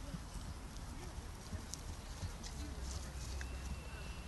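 A horse's hooves on grass as it walks past, irregular soft footfalls with wind rumbling on the microphone.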